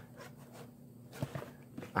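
Faint handling noise from a hand turning a shrink-wrapped cardboard box: soft rustling of the plastic wrap with a couple of light taps, one about a second in and one near the end.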